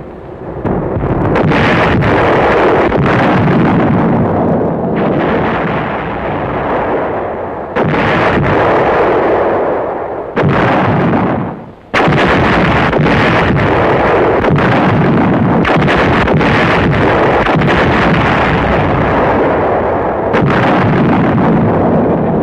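Artillery guns firing over and over, shot after shot with no pause between them, briefly breaking off about twelve seconds in before a sudden blast starts the firing again.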